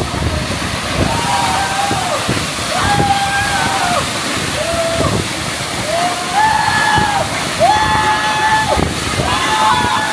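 Waterfall pouring steadily into a pool, with men's voices calling out over it in a string of long held shouts, each about a second.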